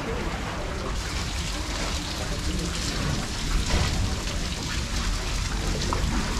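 Steady rain falling, the hiss of drops thickening about a second in.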